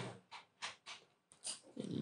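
A few faint, short breath noises from a close-miked man's voice between spoken phrases.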